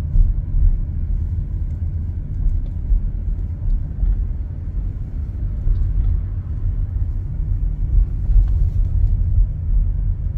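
Steady low rumble of a car being driven, heard from inside the cabin: engine and road noise.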